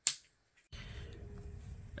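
A single sharp click, then dead silence, then faint steady background noise with a faint thin hum.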